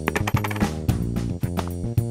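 Metal coins clinking as a hand scoops them up off a table, a quick run of clinks in the first half second, over background music.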